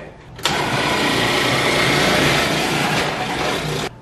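Countertop food processor motor running while it shreds red cabbage. It starts about half a second in, runs steadily, and cuts off just before the end.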